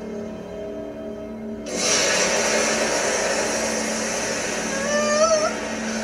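Anime episode soundtrack: a held musical chord, then about two seconds in a sudden rushing noise effect that carries on, with a brief rising vocal cry near the end.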